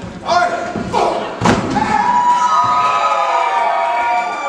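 Two heavy thuds of a wrestler's body hitting the ring, about a second apart, followed by a long drawn-out shout.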